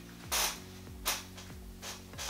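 Soft background music with a steady beat: low thudding kicks falling in pitch, a short hissy stroke every half second or so, over sustained low chords.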